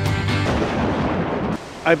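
Background music that breaks off about half a second in with a deep boom-like hit, which rumbles and fades over about a second. Near the end a man's voice starts.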